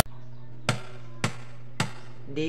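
Three evenly spaced knocks, about half a second apart, on the wooden body of an acoustic guitar, counting in before strumming begins, over a low steady hum.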